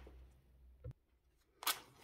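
Quiet room tone broken by a faint click just before a second in and a short, sharp click-like noise about 1.7 s in.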